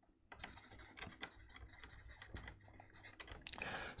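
Felt-tip marker scratching on flipchart paper in a quick run of short strokes as words are written by hand, faint, beginning a moment in.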